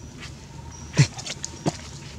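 Macaque giving two short, sharp barks, the first and louder one about a second in with a quickly falling pitch, the second just after.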